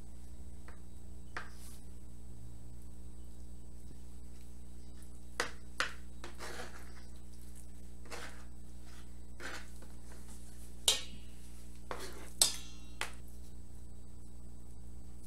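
Scattered light clinks and knocks of dishes and utensils while cooked sweet potatoes are peeled by hand, the loudest two near the end, over a steady low hum.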